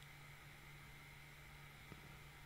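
Near silence: faint room tone with a steady low hum and one faint click near the end.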